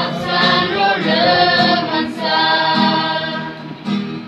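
A mixed group of school students singing a song in Garo together, with an acoustic guitar strummed underneath. The voices swell in at the start.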